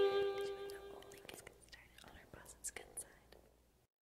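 The final held note of a saxophone solo with its backing track, fading out over the first second or so, followed by a few faint clicks and soft noises.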